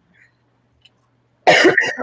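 A person coughs suddenly and loudly about a second and a half in, after a near-silent pause.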